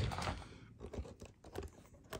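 Handling noise: a few light clicks and soft rustles of hands moving things about, loudest in the first half second and then a few scattered clicks.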